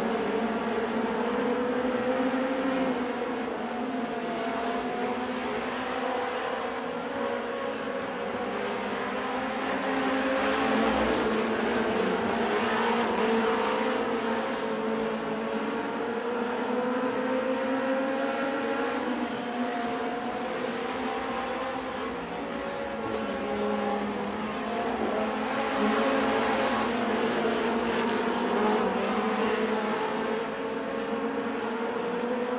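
Several dirt-track race cars running at racing speed, their engines at high revs with pitches that waver up and down through the turns. The sound swells louder twice as the pack comes by.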